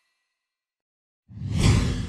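Silence, then a deep whoosh sound effect from an animated logo comes in suddenly about a second and a quarter in.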